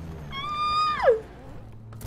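A woman's high-pitched excited squeal, held steady for under a second and then dropping off sharply in pitch, over a low rumble from the show's soundtrack.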